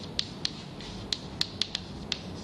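Chalk on a chalkboard as a word is written: a quick, irregular string of sharp taps with a little scratching between them.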